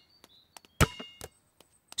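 Cartoon sound effect of a basketball bouncing once on a hard court, a sharp bounce a little under a second in with a brief ringing after it.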